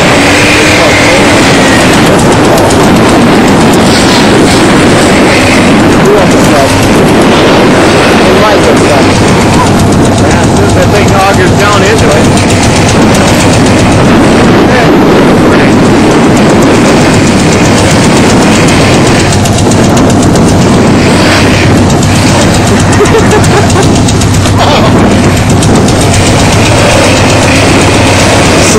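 Dodge pickup truck's engine running hard at high revs as its wheels spin in deep, wet snow, the truck struggling for traction. The sound is loud and steady.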